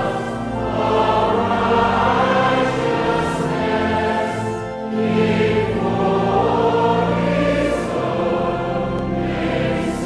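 Choir singing a hymn in held, sustained notes, the phrase breaking briefly about five seconds in.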